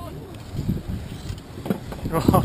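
Wind buffeting the microphone and water noise around a small boat on choppy open water, with irregular low knocks. A faint distant voice is heard briefly at the start.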